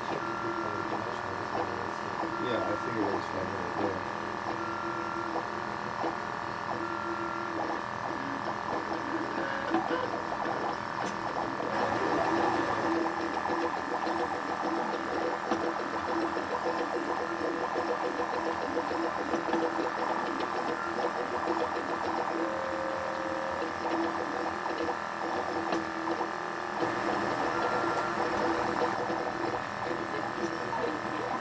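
Hyrel 3D printer running a print, its stepper motors whining and buzzing in steady tones as the print head moves in short strokes. The pitch and busyness change about twelve seconds in and again near the end, as the moves change.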